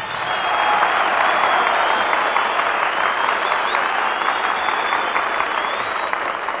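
Theatre audience applauding steadily after a hot-jazz band finishes a number, heard on an old live concert recording with no high treble.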